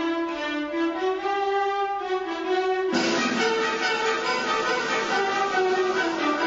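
Symphony orchestra playing: a sustained string melody, then about halfway through the full orchestra comes in with a sudden, fuller sound, with trumpets and xylophone joining.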